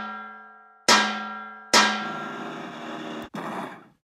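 Metal clangs that ring and fade, like a wrench striking metal: one ringing on from a strike just before, then two more about a second in and near the middle. The last clang runs into a rougher, noisier crash that drops out briefly and returns before stopping near the end.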